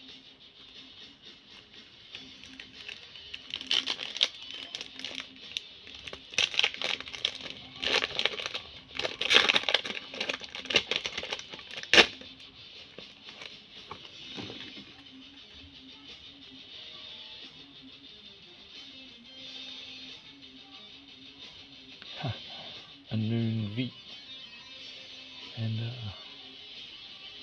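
Foil booster-pack wrapper crinkling as it is handled and torn open, in a run of crackly bursts over several seconds that ends in one sharp snap, with background music underneath.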